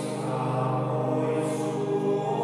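Church organ playing sustained chords, a steady held sound filling the church after the sung psalm.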